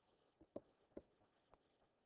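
Near silence with a few faint ticks: a stylus tapping and stroking as it writes by hand on a touch screen.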